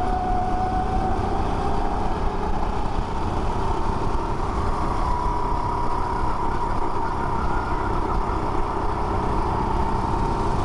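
Rental go-kart engine running hard under the driver: its note eases off about two seconds in, then climbs from about three seconds in and holds high as the kart comes onto the straight, over a steady low rumble.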